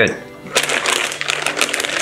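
Clear plastic packaging bag crinkling as hands handle it, a quick run of small irregular crackles starting about half a second in.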